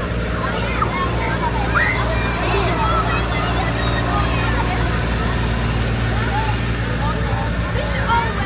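Farm tractor engines running steadily as the tractors pass at walking pace, under the chatter and calls of a crowd of children.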